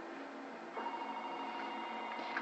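A steady electronic ringing tone, like a telephone ringing, starts again about a second in. It plays through the small speaker of a portable DVD player showing a film.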